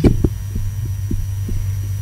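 Steady low electrical hum in the broadcast audio, with a few faint, irregular ticks.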